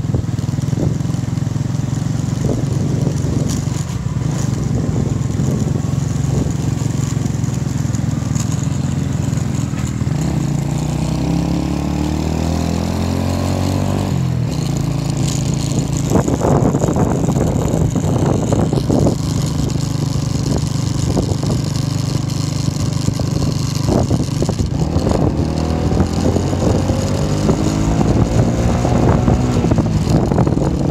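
Motorbike engine running while riding, with a steady rush of noise over it. Its pitch climbs for a few seconds about a third of the way in, drops suddenly, then climbs again near the end.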